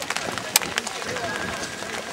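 A horse's hoofbeats at the canter on an arena surface, uneven and mixed with outdoor noise, with one sharp knock about half a second in.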